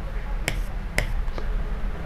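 Three short, sharp clicks about half a second apart, the last one fainter, over a steady low hum.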